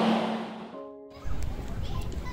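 Steady whirring hum of a DC fast charger's cooling fan, fading away over the first second; a short pitched tone sounds, then low rumbling wind on the microphone takes over.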